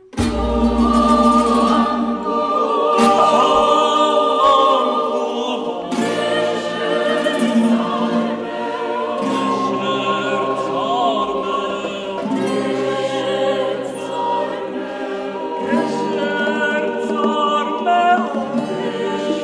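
Choral music, a choir singing sustained chords, starting abruptly after a fade-out.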